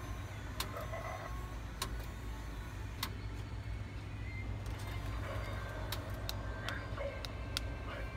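Shop-floor background: a steady low hum with scattered sharp clicks and taps at irregular intervals, about six or seven over the eight seconds.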